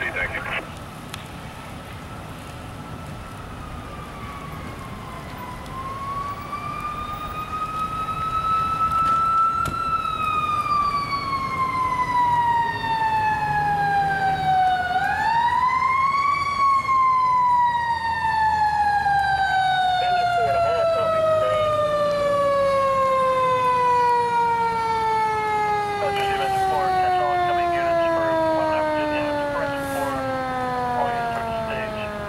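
Fire apparatus siren winding slowly up and down, then a quick rise followed by a long, steady fall in pitch as the siren coasts down. The siren grows louder over the first ten seconds.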